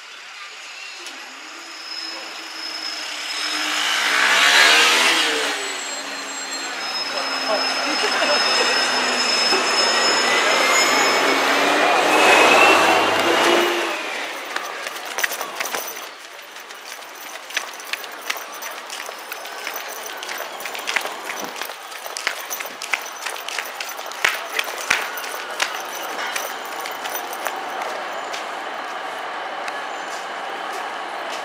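A train running over a level crossing, its noise swelling to a peak a few seconds in and holding loud until it fades about fourteen seconds in, with a rising whine near the end. After that comes a quieter stretch of rapid clicks and knocks from a train running into a station.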